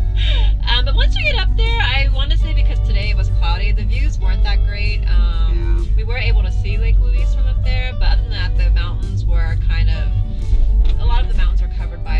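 Background music with women talking over it, above a steady low rumble.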